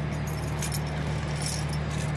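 A vehicle engine idling steadily, with a few light metallic jingles.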